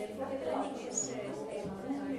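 Speech: a voice talking more quietly than the lecturer, with a brief high squeak about a second in.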